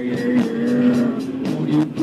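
Live rock band playing an instrumental passage: electric guitar and bass holding sustained notes over a steady drum beat.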